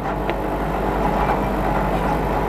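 Steady low hum of an idling engine, heard from inside a parked car's cabin.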